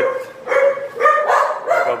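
A dog barking, several high-pitched calls in quick succession.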